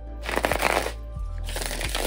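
A tarot deck being shuffled in two quick bursts of riffling cards, about a second apart.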